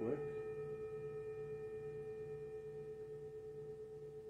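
A struck metal sound-healing tone ringing on as one steady, clear pitch with fainter higher overtones, slowly fading with a gentle wavering pulse.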